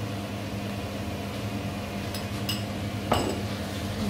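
A metal spoon clinking on cookware: two light ticks about two seconds in, then one sharp clink with a short ring about three seconds in. A steady low hum runs underneath.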